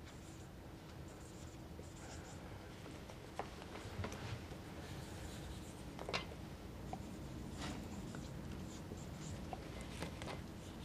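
Marker pen writing on a whiteboard: faint scratchy strokes, broken by a few light clicks.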